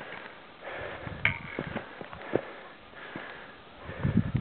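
A climber breathing through the nose while walking, with irregular crunching steps on snow and rock.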